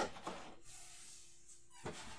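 Cardboard box and packaging being handled: a sharp knock at the start, soft rustling through the middle, and another knock near the end.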